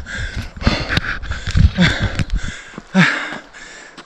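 A man panting hard from a steep uphill run, quick heavy breaths close to the microphone that ease off near the end.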